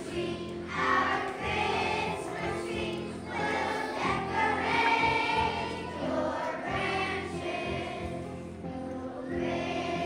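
A children's choir singing a Christmas song, with musical accompaniment underneath.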